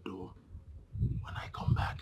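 A man's voice finishing a word, then, from about a second in, quieter low voice sounds that lead into laughter.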